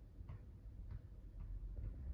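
A basketball being dribbled, its bounces coming as faint, sharp thuds about twice a second.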